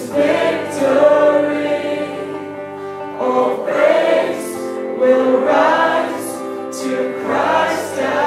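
A woman singing a Christian worship song into a microphone, backed by electric guitar, in sung phrases that start again every second or two.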